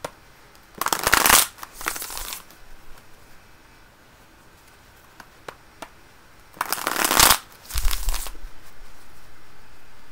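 A deck of tarot cards being shuffled by hand, in two short bouts about a second in and again about seven seconds in, as the deck is mixed before cards are drawn.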